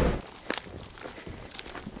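Footsteps on dry ground at the edge of a ploughed field, a few separate steps, the clearest about half a second in and again near the end.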